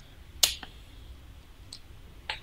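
A single sharp click with a faint second one just after, from handling a small plastic e-liquid bottle as it is taken from its cardboard box.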